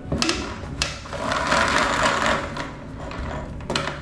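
Ceiling-mounted spring-driven retractable extension cord reel winding its cord back in: a click as the cord is released, a whirring for about a second and a half as it rewinds, and a knock near the end.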